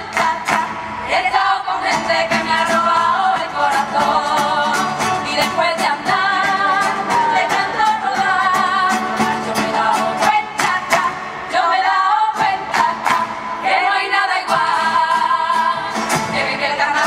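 A women's carnival murga singing together in chorus, with acoustic guitars and a steady percussive beat.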